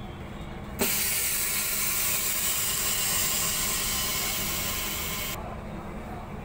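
OCA bubble remover's pressure chamber venting its compressed air. A loud hiss starts suddenly about a second in, holds steady for about four and a half seconds and cuts off: the pressure is let out at the end of the cycle so the door can be opened.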